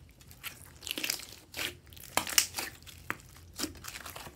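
Slime with small beads mixed in being stretched, folded and squeezed by hand, giving an irregular run of crackling, crinkly pops that are loudest a little past halfway.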